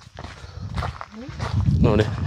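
Footsteps scuffing along a dry dirt-and-stone path, with a voice starting to speak near the end.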